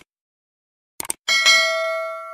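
Subscribe-button animation sound effect: two quick mouse clicks about a second in, then a bright notification bell ding that rings on and slowly fades.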